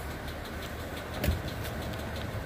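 Vehicle engine idling with a steady low rumble, with one thump about a second in.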